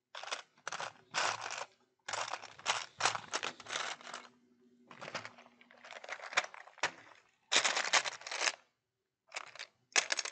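Loose Lego pieces clattering and rattling in a plastic sorting tray as hands sift through them, in a run of short irregular bursts. The tray is lifted and shifted on the table, with the pieces rattling inside it.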